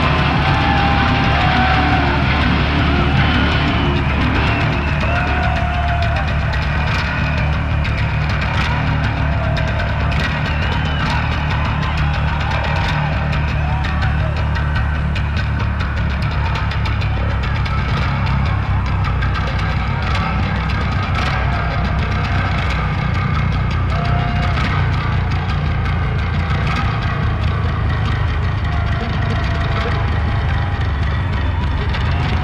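Electric bass played solo through a live PA, holding low notes that ring on steadily.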